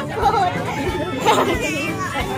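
Children's voices chattering and talking over one another.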